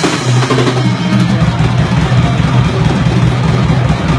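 Live rock band playing loudly without singing: drum kit and bass guitar, the bass holding a steady low note.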